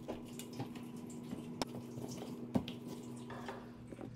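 Wet sliced potatoes and zucchini being handled and shifted in a metal pan: soft moist rustling with a few light clicks and two sharper ticks, over a steady low hum.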